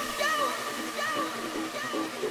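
Breakdown in a hard electronic dance track: the kick and bass have dropped out, leaving a hissing noise wash with short, repeating synth notes, quieter than the full track around it.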